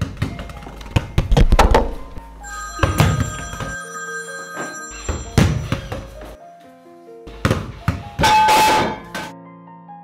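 A run of separate thuds and knocks with ringing metallic tones between them, the loudest and longest near the end: a cake and its metal cake stand knocked down and crashing onto a wooden floor.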